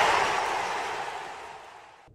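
The tail of a video intro sting: a hissy, reverberant wash of sound fading away steadily to near nothing by the end.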